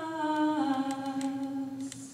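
A single voice singing unaccompanied in a synagogue, holding a long note, stepping down to a lower one about half a second in, and fading out near the end. It is a mournful chant melody of the kind sung in traditional Judaism's Three Weeks of mourning.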